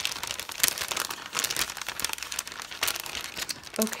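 Clear plastic packet crinkling as hands work inside it and pull things out, a dense run of sharp crackles throughout.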